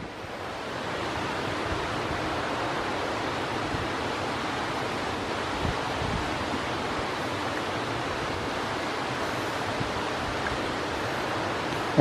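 Steady rushing noise of flowing water, fading in over the first second and then holding even.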